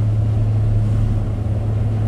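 Steady low hum of engine and road noise heard from inside a moving car's cabin.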